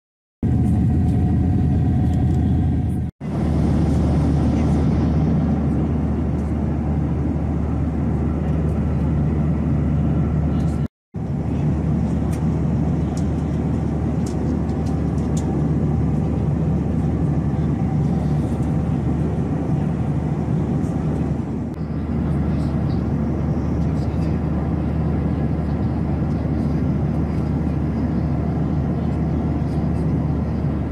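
Steady drone of a jet airliner's cabin in flight: engine and airflow noise heard from a window seat, with a low hum under it. The sound breaks off briefly twice.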